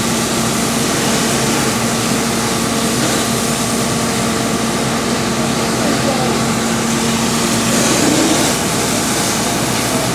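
Steady hiss of water jets from charged fire hoses over the even hum of an engine-driven pump; the hum's steady tone drops out about eight seconds in.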